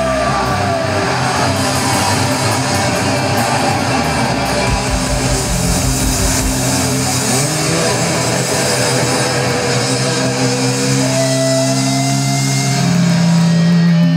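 Live heavy metal band playing: distorted electric guitars, bass and drums. In the second half the drum hits thin out and long held guitar notes ring on.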